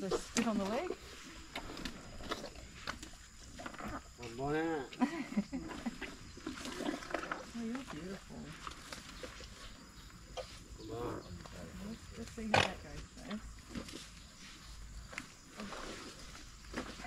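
Asian elephant breathing and blowing through its trunk as it takes food from a basket, with one sharp blast about twelve and a half seconds in.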